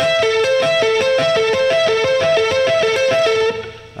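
Electric guitar picking a repeating three-note A minor arpeggio (A, C, E) on the top three strings with an up-down-down pick pattern, an economy-picking exercise built on the awkward inside picking movement, in an even, steady rhythm. The playing stops about three and a half seconds in and the last note rings out.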